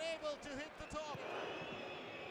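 Faint football stadium background: crowd noise with a few distant voices and a couple of soft thumps in the first second or so, settling into a steady low hum of the crowd.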